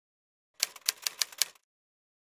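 Typewriter-key sound effect: a quick run of about six sharp clacks lasting about a second, starting about half a second in.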